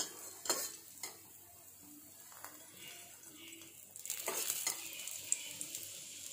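Oil sizzling under a besan-stuffed paratha frying on a tawa, with a few short knocks in the first second; the sizzling grows louder and denser about four seconds in.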